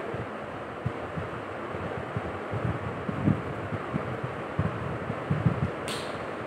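Wind on the microphone: a steady hiss with irregular low thumps, and a short high hiss just before the end.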